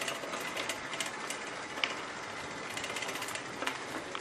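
A bicycle rolling over a brick-paved path: steady tyre noise with many light, irregular clicks and rattles from the bike as it rides over the paving blocks.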